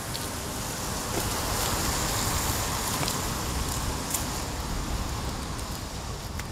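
Car tyres hissing on a wet road: a steady hiss that swells about a second in and slowly fades as the car passes.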